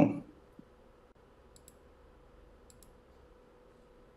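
A few faint, sharp clicks, heard as two quick double clicks about a second apart, over a faint steady hum.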